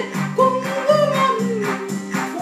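A woman singing a Tamil song, her voice sliding and ornamenting the melody, over electronic keyboard accompaniment with sustained chords and a steady percussion beat.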